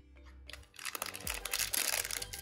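Plastic cellophane wrapper of a trading-card cello pack crinkling and crackling as it is picked up and handled, starting just under a second in as a dense run of small crackles, over soft background music.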